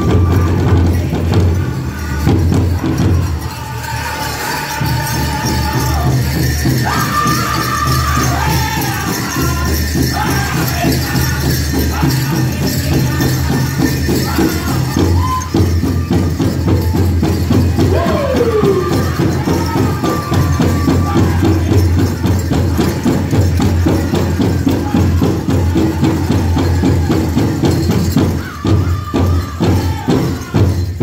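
Powwow drum group singing a fast fancy dance song over a rapid, steady beat on a big drum, with a falling sung call about two thirds of the way through. Jingling bells ring along with the beat.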